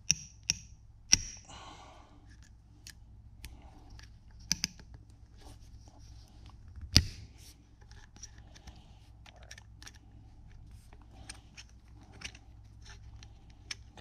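Small hex key working the two bolts that hold a rifle's top rail: scattered light metal clicks and faint scraping. The loudest click comes about seven seconds in.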